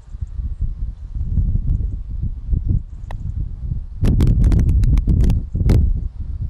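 Wind buffeting the microphone as a low rumble, with a wooden croquet mallet knocking a ball forward across the lawn. A quick string of sharp clicks comes in the last two seconds.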